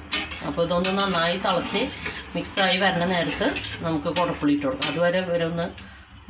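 A metal spatula clinks and scrapes against a stainless steel pot as a fish curry is stirred, a few sharp clinks at irregular moments under a woman's talking.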